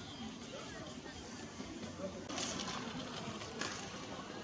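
Faint outdoor street ambience, with a low murmur of distant voices.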